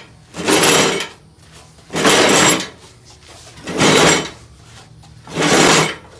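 John Deere riding mower's steel cutting deck dragged across a concrete floor in four tugs, each a harsh scrape of about half a second, roughly one and a half seconds apart.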